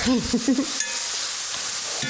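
Diced vegetables sizzling with a steady hiss in a cast-iron pan as a spatula stirs them, with a few scraping clicks a little under a second in.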